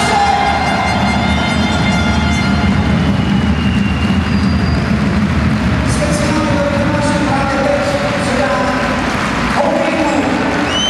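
A hockey arena crowd chanting in a loud, steady din, with drawn-out sung voices over the rumble of the stands.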